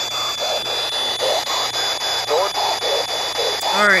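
P-SB11 spirit box sweeping through radio stations: short chopped fragments of static and broadcast sound about four a second, over a steady high whine. The FM sweep-rate light is set at 250 ms.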